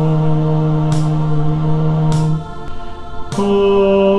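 Bass part of a choral anthem sounding as long, steady held notes. A low note is held for about two and a half seconds and then falls away. A higher note enters about three and a half seconds in, with a faint tick about every second and a quarter keeping the beat.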